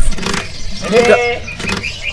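A man's voice speaking a single short word about a second in, over steady background noise.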